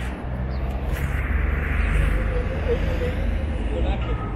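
Street traffic: a vehicle passing, swelling to its loudest about two seconds in, over a steady low rumble.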